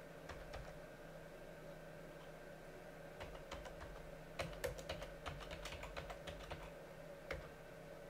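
Computer keyboard typing: scattered keystrokes, thickest between about three and seven seconds in, then a single last keystroke near the end, over a faint steady hum.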